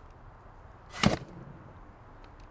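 A shovel blade driven into dirt once, about a second in: a quick swish ending in a short, sharp hit.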